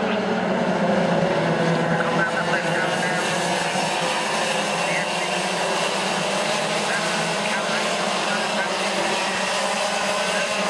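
A pack of racing karts running round the circuit, their engines together making a continuous droning whine whose pitch wavers as they go through the corners.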